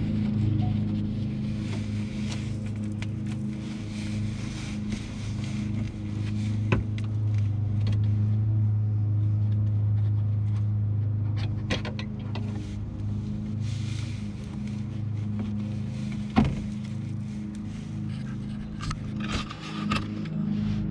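A steady low engine hum, like a vehicle idling close by, with a few sharp clicks and scrapes as the fog lamp bulb socket is twisted counterclockwise out of its housing.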